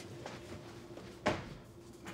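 Quiet room with a faint low steady hum, a couple of light knocks and one short thump about a second and a quarter in.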